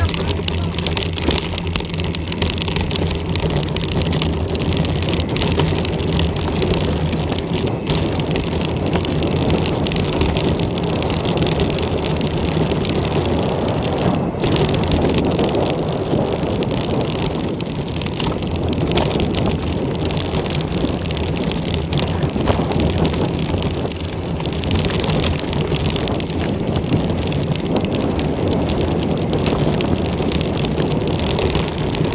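Mountain bike tyres rolling over a loose gravel and dirt trail, with a constant rush of wind on the camera microphone and frequent small rattles and knocks from the bike as it picks up speed downhill.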